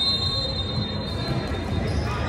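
A long, high, steady squealing tone that fades out about a second in, over the steady hubbub of a busy indoor basketball gym.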